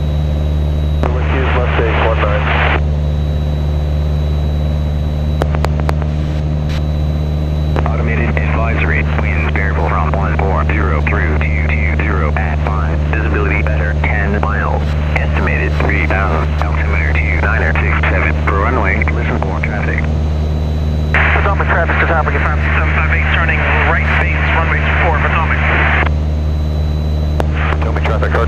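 Steady drone of a Cessna 177 Cardinal's single piston engine and propeller in flight, heard inside the cabin, with no change in pitch.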